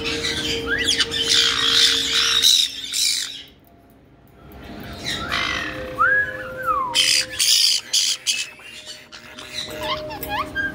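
A caique giving short chirps and squawks that rise and fall in pitch, among scattered sharp clatters of stainless steel dishes and bowls that it is poking at in the sink. It goes briefly quiet about three and a half seconds in.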